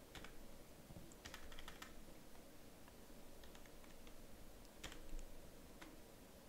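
Faint computer keyboard typing: a few scattered keystrokes in short clusters.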